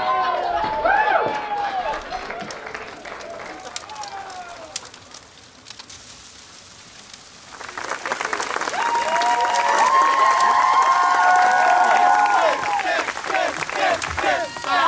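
Crowd of people cheering and shouting, dying down to a lull about halfway through, then rising again louder about eight seconds in with cheering and clapping.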